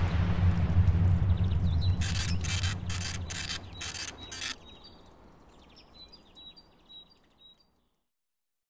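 Closing soundtrack of a promotional logo sequence: a low drone left over from the music fades away, then about six quick hissing bursts. Faint high chirps follow, dying out near the end.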